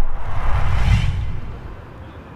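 Logo-intro sound effect: a whoosh over a deep rumble that swells to its loudest about a second in, then fades away.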